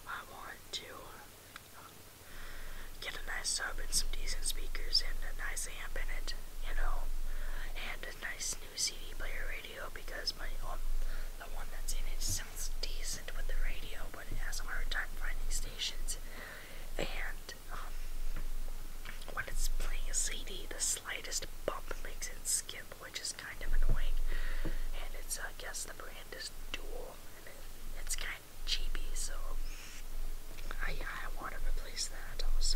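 A person whispering continuously, starting about two seconds in.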